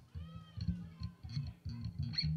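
Live band's bass guitar playing soft low notes between songs, with one short high-pitched call that rises and falls about a quarter of a second in.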